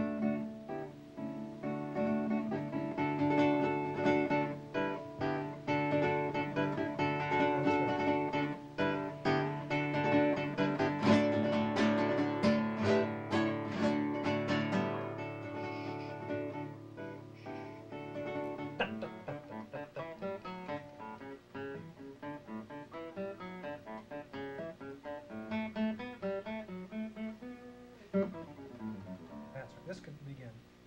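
Classical guitar played through a practice passage: sustained notes and chords building to the loudest part around the middle with fast repeated strokes, then falling back to quieter, short detached notes in the last third, the dynamics the teacher has just asked for.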